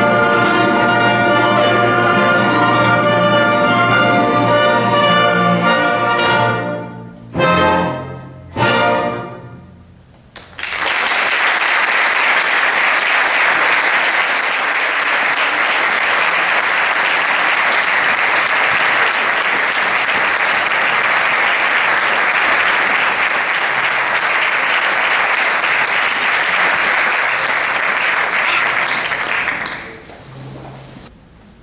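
Symphony orchestra with strings and brass holding a loud full chord, then playing two short closing chords about seven and a half and nine seconds in that end the piece and ring away in the hall. Audience applause then starts and carries on steadily until just before the end.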